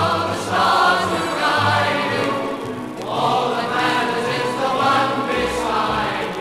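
A 1950s pop ballad playing from a Decca 78 rpm shellac record on a turntable: a sung passage with choir-like voices over the accompaniment.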